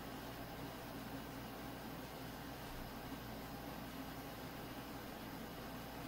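Steady background hiss with a faint low hum, unchanging throughout and with no distinct event: room tone.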